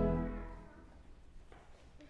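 Pipe organ's held chord released, dying away in the church's reverberation within about half a second. Then low room noise with a few faint knocks.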